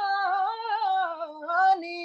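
A man singing the drawn-out last word of a Hindi song, one long wavering note with small melodic turns. The note dips, climbs again and breaks off sharply near the end, where a softer held tone carries on.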